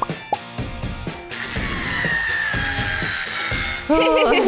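Background music with a beat, then from about a second in a cordless drill running steadily for a couple of seconds, its whine sagging slightly as it drives a screw into the wooden frame.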